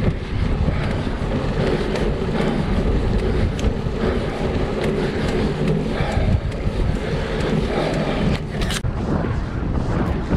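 Steady wind rushing over the microphone of a bike-mounted action camera as the road bike rolls along at speed, with a short sharp click near the end.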